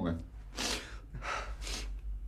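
A man's heavy, shaky breaths, two in a row, drawn as he struggles to hold back tears.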